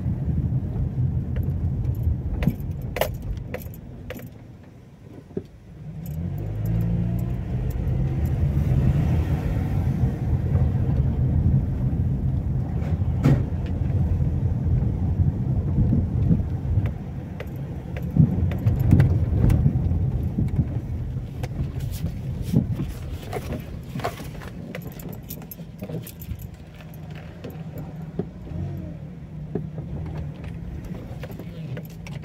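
Car engine and tyre noise heard from inside the cabin at low speed, with frequent light rattling clicks. It dies down around four to six seconds in, then picks up again as the engine pulls away.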